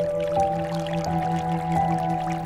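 Slow, calm instrumental music of held, sustained notes, with a new note entering about every second.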